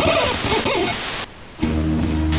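Television static hiss starting abruptly and cutting in and out in short stutters, with gliding tones under it in the first second. About one and a half seconds in, a steady low bass chord of the music comes in.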